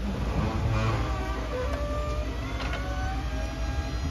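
School bus wheelchair lift (BraunAbility) being powered up from its raised position into the stowed, folded position: a steady motor whine with a few short squeaks from the moving platform. Beneath it runs the steady low hum of the bus engine idling.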